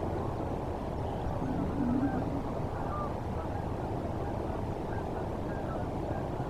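Steady low outdoor rumble with faint, scattered waterfowl calls, including one lower call about two seconds in.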